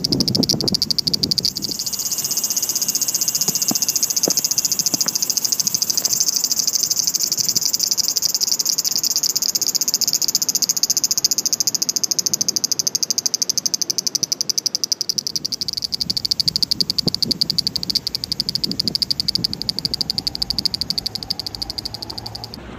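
Loud insect chorus: a steady, high-pitched buzz that pulses very rapidly, running without a break.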